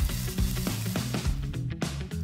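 Fine dry sand pouring in a stream into a plastic bottle onto a layer of charcoal: a steady hiss that fades near the end, with background music underneath.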